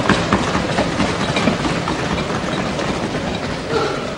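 Applause from a large audience, a dense continuous patter of clapping that begins just as the speaker finishes a point and thins out near the end.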